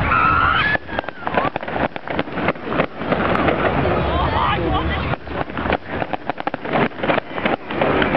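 Crowd of spectators talking through a fireworks display, with fireworks crackling and popping irregularly. The sound is thin and uneven.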